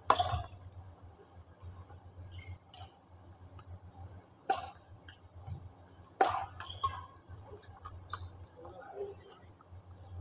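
Badminton rackets hitting a shuttlecock in a rally, about five sharp strokes, the loudest right at the start and just after six seconds, with others near three and four and a half seconds.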